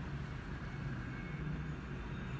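Steady low background hum and rumble with no speech: room tone.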